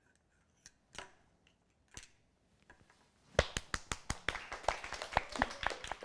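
Light clicks as small items are set on the pans of a metal balance scale, followed about midway by a rapid, irregular run of clicking lasting around three seconds.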